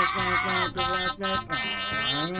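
A man's voice speaking through a handheld Voice Changer 7.0 toy megaphone on its robot setting, coming out as a flat, monotone electronic voice in short phrases.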